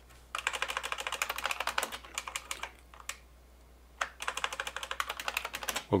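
Typing on a computer keyboard: two runs of rapid keystrokes, each about two seconds long, with a pause of over a second between them.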